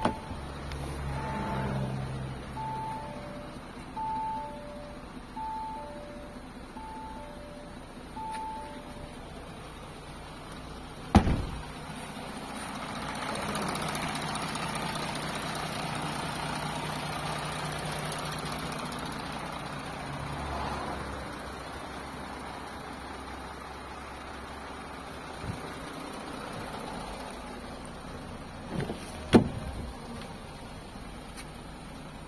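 Car warning chime from an Audi with its door open: two alternating tones, high then low, repeating about every 1.4 seconds for about nine seconds. A loud bang follows about two seconds later, then a steady hum with a rushing sound for several seconds, and another sharp bang near the end.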